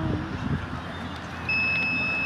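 A single high-pitched electronic beep, held for nearly a second and starting about a second and a half in, from the quadcopter's radio gear as it is being armed.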